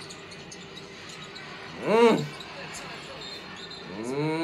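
Faint arena sound from a basketball broadcast, with a low crowd murmur and light ticks. About two seconds in, a man gives a short hummed "mm" whose pitch rises and falls.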